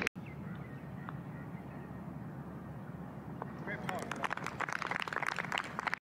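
Outdoor golf-course background: a steady low hum, joined in the last two seconds by faint distant voices and scattered clicks.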